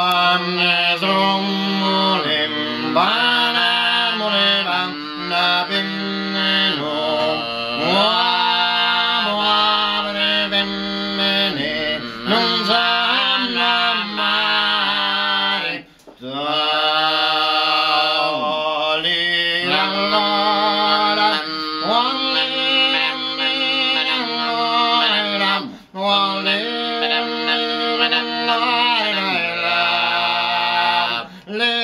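Two men singing together unaccompanied in the ancient Sicilian style, long held notes with sliding, wavering pitch. The singing breaks briefly for breath about 16 and 26 seconds in.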